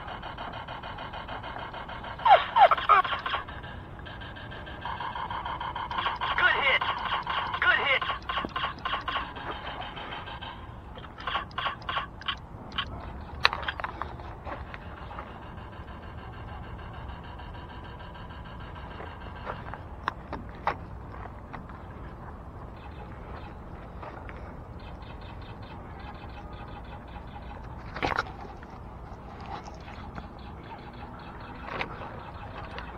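Electronic firing sounds from laser tag rifles in rapid bursts through the first fourteen seconds or so, the loudest about two seconds in, mixed with players' voices calling out. After that come a few isolated shots against a steady outdoor background.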